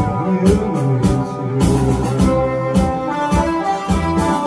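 Instrumental break of a slow ballad played on an electronic arranger keyboard, with a steady drum beat under sustained melody notes.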